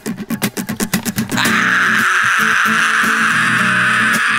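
Solo guitar strummed as a song's intro: quick, evenly spaced percussive strums at first, then a steady, dense strumming pattern from about a second and a half in.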